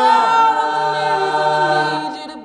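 A cappella vocal group holding a sustained chord, with a low bass note entering underneath a little before the middle.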